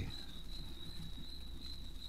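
Crickets chirping steadily, a pulsing high note, over a low hum.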